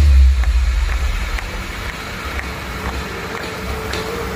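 Stage flame machines firing jets of fire. It is a rushing noise, loudest in a burst right at the start, then easing to a steady roar.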